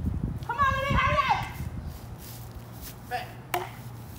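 A high-pitched shout about half a second in, over a low rumble on the microphone, then a single sharp knock near the end.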